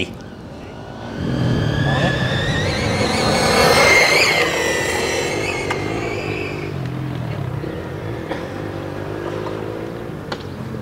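An RC Formula One car, converted from nitro to electric power, runs past with a high electric-motor and drivetrain whine. The whine climbs in pitch and loudness to a peak about four seconds in, then drops and fades as the car pulls away.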